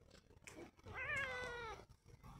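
A domestic cat gives a single meow, about a second long, starting midway through, its pitch dropping at the end.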